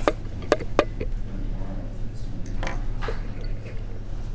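Small scissors snipping fly-tying thread at the vise: a few sharp clicks in the first second, then fainter handling clicks, over a steady low hum.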